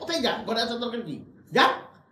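A man speaking angrily in Bengali, with a short, loud, shouted syllable near the end.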